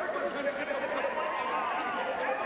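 Spectators at a ski race finish cheering and shouting, several voices overlapping.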